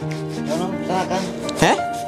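Soapy sponge rubbing and scrubbing over wet bare skin of an arm, under steady background music.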